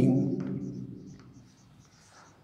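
Marker pen writing on a whiteboard in short faint strokes, after a man's drawn-out spoken word fades out at the start.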